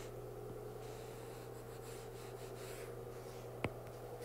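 Faint stylus sounds on a tablet's glass screen as handwriting is erased, with one sharp tap of the stylus near the end.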